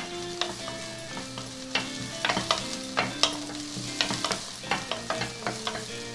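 Wooden spatula stirring chopped onion frying in a little oil in a stainless steel pot, with irregular short scrapes and taps of wood on the metal base.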